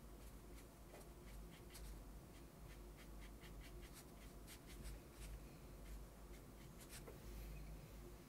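Faint strokes of a size 2 watercolour brush flicking across cold-press watercolour paper: a string of short, soft ticks, several a second, over a low room hum.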